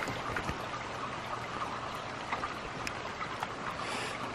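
Pouring rain: a steady hiss with scattered drops tapping now and then.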